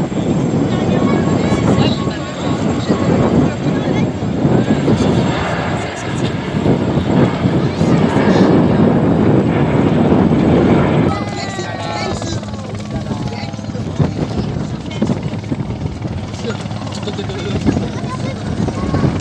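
Helicopter flying overhead, its rotor chop loud for the first ten seconds or so, then dropping away abruptly about eleven seconds in.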